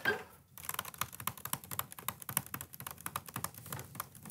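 Typing on a MacBook laptop keyboard: a quick, irregular run of key clicks that starts about half a second in.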